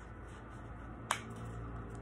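A single sharp tap about a second in, from fingers pressing a fold into a sheet of typing paper on a wooden table, over a low steady hum.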